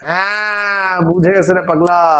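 A man's voice drawing out one long vowel at a steady pitch for about a second, then going on in quick speech.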